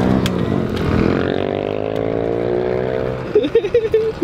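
50cc two-stroke moped engine running at raised revs: the pitch climbs at first, holds steady, then drops off about three seconds in.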